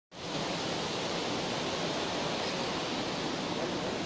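Steady rushing noise of river water flowing past the concrete piers and gates of an irrigation barrage.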